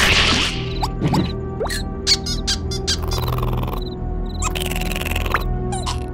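Cartoon soundtrack: background music under comic sound effects, with a loud rushing burst at the start, a quick run of sharp ticks and short rising squeaks in the first few seconds, and two longer hissy bursts later.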